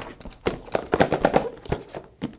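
Stiff cardboard packaging being pried open by hand: a quick, irregular run of scrapes, taps and rubs of the flaps, loudest in the middle second.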